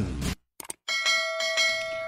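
A single bell chime struck about a second in, ringing on steadily with several clear tones, as the cue for a radio time check. It follows the last word of a voice and a short silence.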